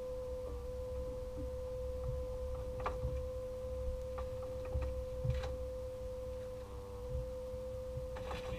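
A steady, even mid-pitched electric whine over a low rumble, with a few faint clicks about three and five seconds in.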